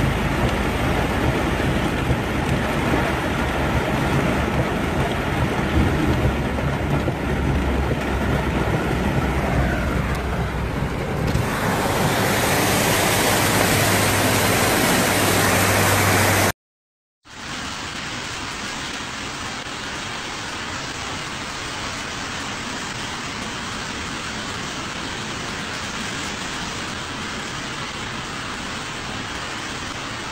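Heavy rain drumming on a vehicle with its engine running low underneath, growing louder and brighter about a third of the way in. After a half-second silent cut about halfway through, a steady rush of rain and running floodwater.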